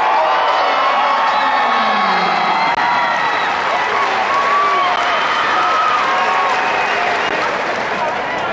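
Large arena crowd cheering and applauding after a wrestling match ends, many voices shouting and whooping over steady clapping.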